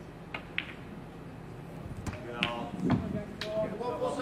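Snooker cue tip striking the cue ball, then the cue ball clicking into the black a quarter second later, as the black is potted. Faint voices follow in the hall.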